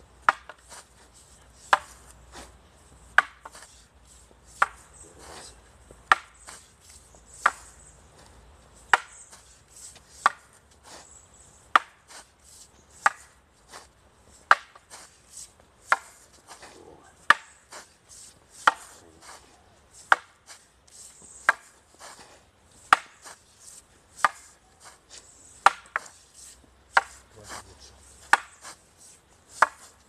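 Two long wooden staffs clacking against each other in a paired staff drill. A sharp strike comes about every second and a half in a steady rhythm, with lighter knocks in between.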